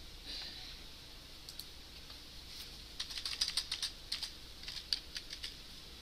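Typing on a computer keyboard: a few scattered keystrokes, then a quick run of keystrokes about halfway through that lasts a couple of seconds.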